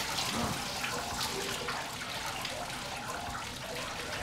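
Strings of hanging scallop shells clattering against one another as a hand brushes through them: a dense, steady run of many small clicks and rustles.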